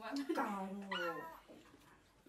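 A person's drawn-out, wordless whining vocalisation, lasting about a second and a half and dropping off about halfway through.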